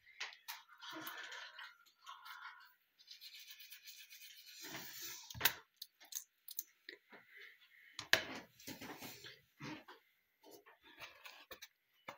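Teeth being brushed with a toothbrush: uneven, broken scrubbing of the bristles, with a few short sharp knocks midway.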